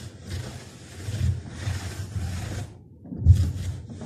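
A cloth being rubbed back and forth over wooden floorboards in a series of wiping strokes, with a short pause and then a louder stroke about three seconds in.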